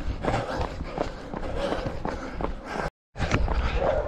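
Running footsteps on a paved road with the jostling of a handheld camera. The sound cuts out completely for a split second about three seconds in.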